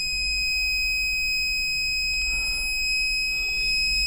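An Arduino memory-game buzzer on a breadboard sounding one steady, high-pitched continuous tone, a large noise. The buzzer is inserted with the wrong polarity.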